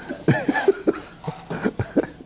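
A man laughing in short, breathy bursts.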